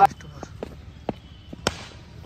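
A handful of short, sharp knocks and clicks, the loudest and sharpest about one and a half seconds in.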